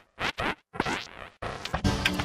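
Heavily edited logo sound effects chopped into several short scratchy bursts with brief dead-silent gaps between them, running on continuously for the last half second.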